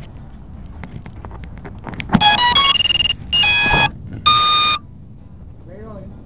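Electronic start-up beeps from an FPV quadcopter's ESCs sounding through its motors: a quick run of changing notes, then two steady held tones, starting a little over two seconds in, with a few light clicks before.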